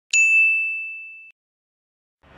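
A single high, bell-like ding, struck once right at the start and ringing out, fading away over about a second.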